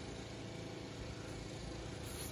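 Faint, steady low rumble of background noise with no distinct events.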